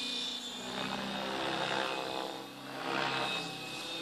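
Align T-Rex 600E Pro electric RC helicopter in flight: a steady rotor whir with a high electric-motor whine. It swells louder about a second and a half in and again near three seconds as the helicopter manoeuvres.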